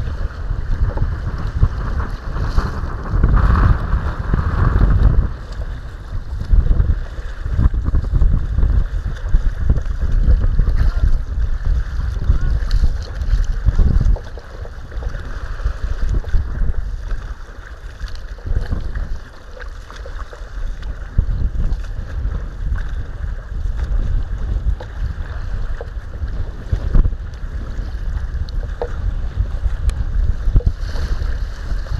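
Wind buffeting the microphone in uneven gusts, with choppy water splashing against the bow of a kayak; the buffeting eases somewhat about halfway through.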